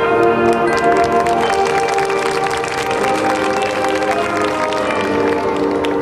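High school marching band playing held chords over sharp percussion strokes.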